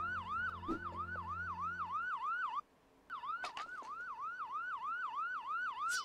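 Police car siren yelping: a quick rising wail that repeats about three times a second. It cuts out for a moment a little before halfway, then picks up again.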